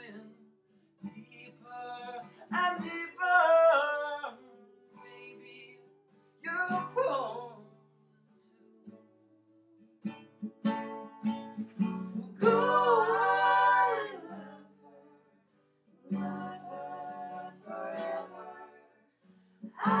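Acoustic guitar played live with singing in a small room. The sung lines come in phrases with softer guitar-only gaps between them.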